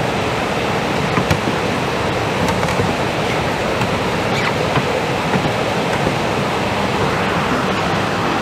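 Heavy rain falling on a metal pavilion roof, a steady even rush, with a few faint clicks as 78 rpm records in a crate are handled.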